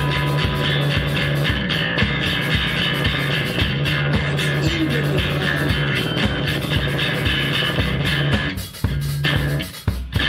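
Improvised live band music: a dense jam over held low bass notes, briefly dropping away twice near the end.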